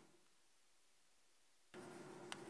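Mostly near silence. Chalk scratching on a blackboard trails off at the very start and starts again shortly before the end.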